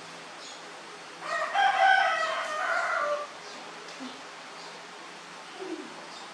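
A rooster crowing once, a single call of about two seconds starting a little over a second in.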